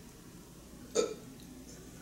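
A single short throat sound from a person, about a second in, against quiet room tone.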